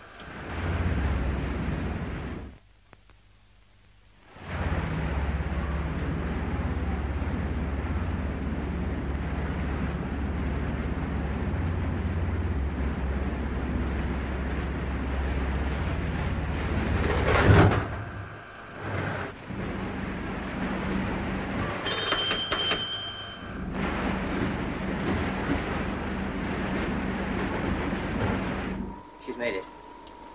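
Submarine engines in a film soundtrack running full ahead: a steady low rumble with a noisy hiss over it. It drops out for about two seconds near the start, swells to its loudest about halfway through, and carries a short high tone a few seconds later.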